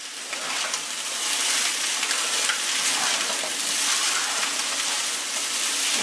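Fried rice sizzling in a hot pan while a spatula stirs it, just after a tablespoon of soy sauce goes in. The sizzle builds over the first second and then holds steady.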